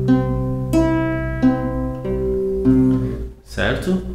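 Nylon-string classical guitar being fingerpicked: single notes of an arpeggiated chord plucked one after another, about three every two seconds, each left ringing over the others. The picking stops a little before the end.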